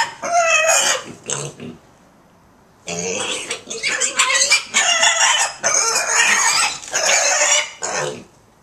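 Pet piglets squealing loudly in high-pitched cries: two squeals in the first second and a half, then, after a pause of about a second, squealing almost without break for nearly five seconds.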